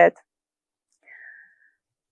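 A woman's spoken word ends at the start, then near silence, broken only by a faint, brief hiss about a second in.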